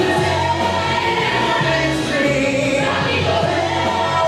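Musical-theatre cast singing together in chorus over band accompaniment, with the bass line stepping from note to note.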